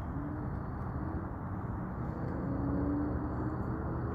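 Steady low rumble of outdoor background noise with no clear events, with a faint wavering pitched sound in the middle.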